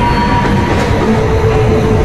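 Loud horror-trailer score: a dense, heavy rumble with faint held tones over it.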